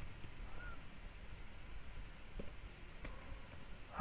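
A few faint, scattered keystroke clicks from a computer keyboard over quiet room tone, as a short command is typed and entered.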